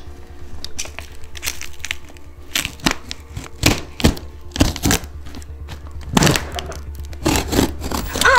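Utility knife slicing through packing tape and a taped paper label on a cardboard box: a string of irregular sharp cuts, cracks and tearing scrapes. A steady low hum runs underneath.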